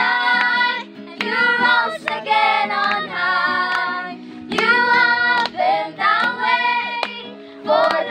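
A group of young voices singing a song together in unison, accompanied by a strummed acoustic guitar, with hand claps now and then.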